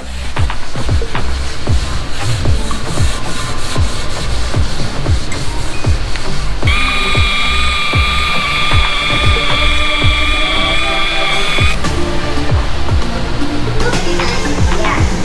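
Background music with a steady beat. Over it, from about seven to twelve seconds in, a steady high whine from an angle grinder with a buffing pad polishing an aluminum truck wheel.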